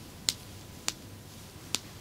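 Three short, sharp clicks, spaced about half a second to a second apart.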